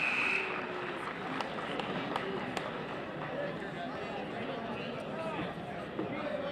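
Scoreboard buzzer ending a wrestling period, a steady tone that cuts off about half a second in, followed by gymnasium crowd chatter with scattered voices and a few sharp clicks.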